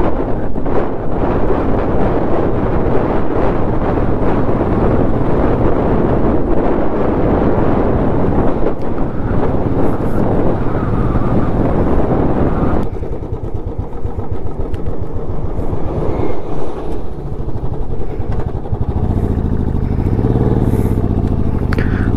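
Motorcycle engine running under way with heavy wind rush on the camera microphone. About halfway through, the wind noise drops away and the engine's low beat comes through more plainly.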